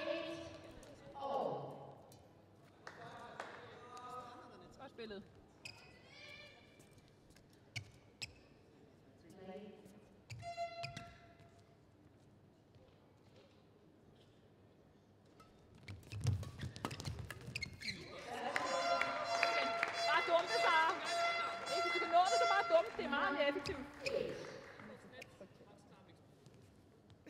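Badminton rally: sharp racket strikes on the shuttlecock and shoes squeaking on the court floor. In the last third comes a loud burst of shouting and cheering, with a held pitched tone running through it.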